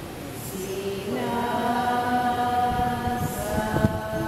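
Congregation singing a slow worship song together, with long held notes and a new phrase swelling in about a second in. Near the end a few low thumps sound under the singing, with one sharp knock just before it ends.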